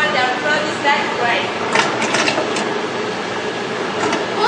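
Steady mechanical hum of a running popsicle machine under background voices. A few sharp metallic clinks come about two seconds in as the stainless-steel popsicle moulds are handled.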